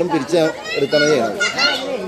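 Speech: several people talking over one another, a man's voice among higher-pitched voices.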